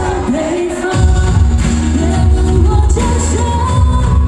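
A woman singing a pop song live over amplified backing music through a stage sound system. The bass drops out briefly near the start and comes back about a second in.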